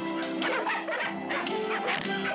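Sled dogs barking and yipping over steady background music.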